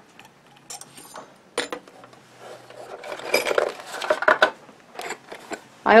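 Small metal sewing-machine parts, a feed-dog cover plate and attachments, clinking and being handled on the machine bed: a few sharp clicks early, then a stretch of rustling handling about three seconds in.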